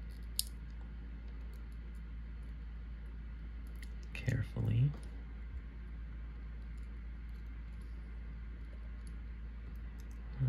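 Faint small clicks of steel tweezers against a lock cylinder and its brass pins as the pins are picked out, over a steady low hum. A brief murmur of a voice comes about four seconds in.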